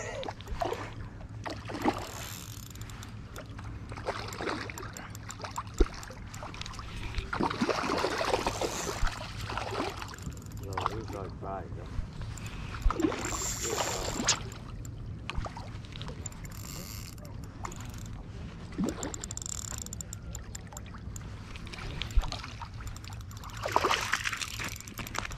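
Spinning reel being cranked as a hooked trout is brought in: a light mechanical gear whir with scattered sharp clicks, among faint voices.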